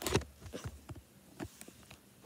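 Handling noise from a handheld phone being moved and rubbed against a shirt: a sharp knock at the start, then several smaller knocks and rustles.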